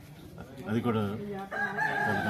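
A rooster crowing: one long, drawn-out call that begins about halfway through, heard over a man's voice.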